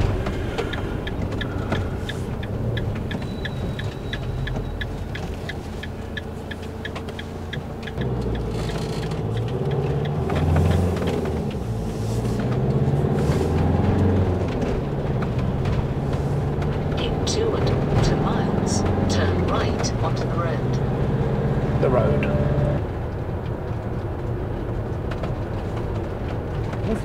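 Motorhome engine and road noise heard inside the cab, with the indicator ticking steadily for the first several seconds as the van turns right. From about eight seconds in, a low melody of held notes changing step by step plays over the road noise.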